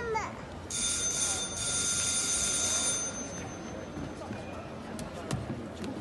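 An electric bell ringing steadily for about two seconds, starting about a second in: the show-jumping arena's judges' bell.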